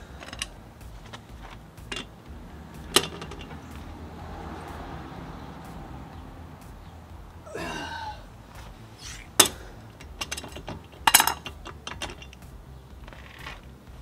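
A steel breaker bar and a 3D-printed aluminum socket clinking and knocking as they are handled on a car wheel's lug nuts. Sharp metallic clinks come scattered through, the loudest about three, nine and eleven seconds in.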